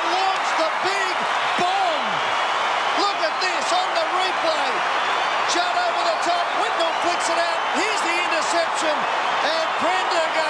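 Large stadium crowd cheering after a goal: a steady roar with many individual yells and whoops rising and falling over it, and scattered clapping.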